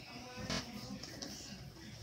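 Faint audio from a video playing through a computer's speakers: quiet music with a soft voice, and a short knock about half a second in.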